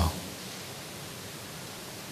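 Steady, even hiss of background noise, with no other sound, in a pause between spoken words; the last syllable of a man's speech ends right at the start.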